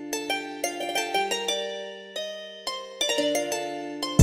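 Trap type-beat instrumental with no drums: a plucked-string melody, guitar-like, playing a slow arpeggio of ringing notes that start sharply and fade.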